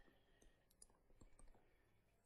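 Near silence with a few faint, scattered clicks of a stylus tapping on a screen while writing.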